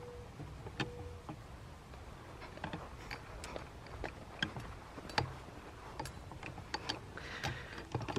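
Faint outdoor ambience with a low rumble and scattered light clicks and ticks: footsteps through grass and handling of a hand-held camera as it is carried.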